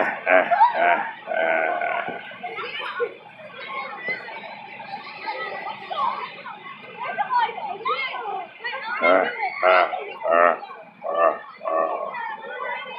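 Several people's voices chattering and calling out, no words clear, busiest near the start and again in the last few seconds.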